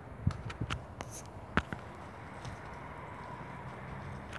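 A few short, sharp taps and crackles in the first two seconds, the loudest about a second and a half in, over a steady outdoor background.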